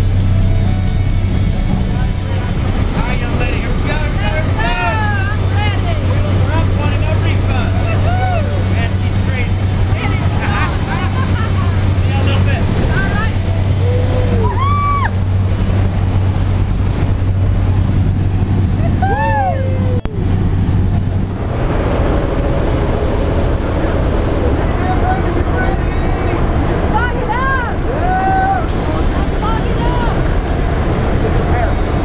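Propeller aircraft engine droning steadily during the takeoff roll, heard from inside the cabin, with voices over it. About two-thirds of the way through the sound cuts to a different, rougher cabin noise.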